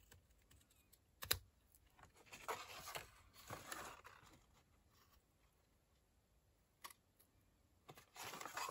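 Small craft scissors snipping designer paper, faint: a sharp click of the blades about a second in, then two short stretches of cutting and paper rustle, and a single faint tick near the end.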